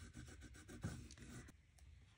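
Faint rubbing and light scratching of fingertips working wax over the textured rim of a painted wooden hoop, with a few small taps; it stops about three-quarters of the way through.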